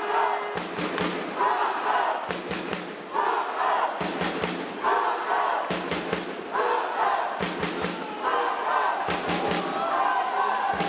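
Spectators or sideline players chanting a repeated shout about once a second, each shout marked by a cluster of sharp hits.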